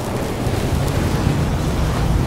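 Sound design of an animated logo intro: a steady, deep rumble with a hiss over it, swelling toward the logo's burst.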